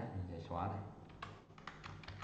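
Computer keyboard keys clicking a few times in quick, separate strokes while a man's low voice is heard.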